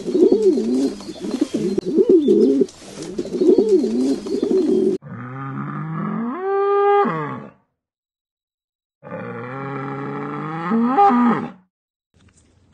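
Common wood pigeon cooing in repeated phrases, then, after about five seconds, two long moos from cattle about a second and a half apart, each rising in pitch near its end.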